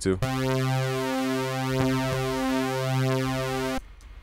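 Kepler EXO software synthesizer playing one sustained low note through its chorus, set to modes one and two combined. The tone has a slow, washy swell and sounds wider. The note stops abruptly just before the end.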